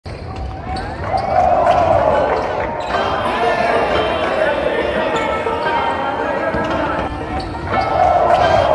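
A basketball bouncing, a few separate strikes, over a continuous music track with a voice in it.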